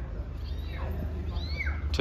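Short high-pitched animal calls, each rising then falling in pitch, about a second apart, over a low steady hum.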